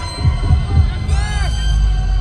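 Festival sound system playing a hip-hop backing track: a steady deep bass with three heavy low thumps in the first second, then a sweeping, arching synth effect about a second in.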